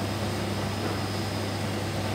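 Machinery running steadily: a low hum with a faint high whine and hiss over it, unchanging throughout.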